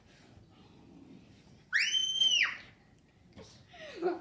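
A young girl's high-pitched squealing scream: one call under a second long that rises quickly, holds, then drops away.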